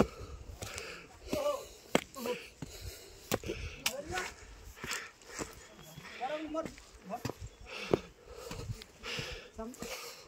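Footsteps on a rough stone path and stone steps, a series of sharp, irregular knocks, with brief snatches of indistinct voices in between.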